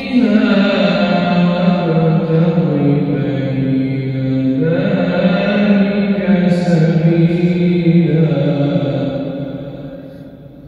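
A solo male voice reciting the Quran in the melodic Turkish style, drawing out long, ornamented held notes. A new phrase begins a little before halfway, and the voice fades away near the end.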